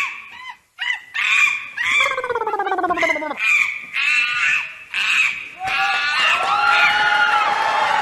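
A voice making short, high-pitched, bird-like cries and squeals. About six seconds in, it gives way to a long drawn-out cry with several pitches held together.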